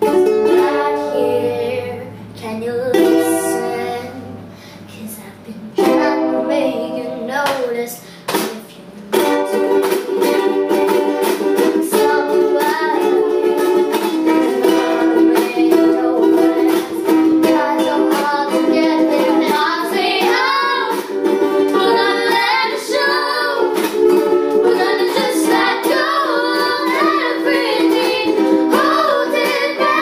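Three ukuleles strummed together: a few separate ringing chords at first, then steady rhythmic strumming from about nine seconds in. Children's voices sing along over the strumming in the later part.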